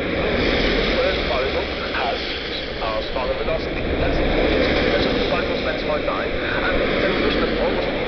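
Steady noise of a moving vehicle, road and engine noise with a low rumble underneath.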